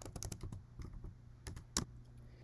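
Computer keyboard typing: an irregular run of quick key clicks, with one louder keystroke near the end.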